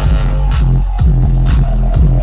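Electronic dance music from a live DJ set, played loud over the venue's sound system. It has a heavy bass line and a steady beat of about two hits a second.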